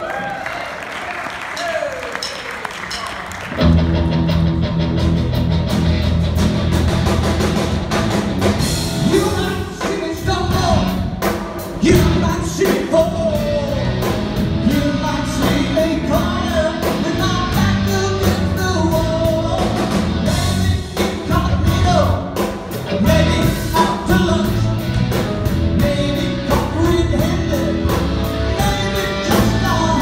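Live rock band in a large hall: a male lead singer with drums, electric guitar, bass guitar and keyboards. After a few quieter seconds the full band comes in loudly, about three and a half seconds in, and plays on with a steady beat.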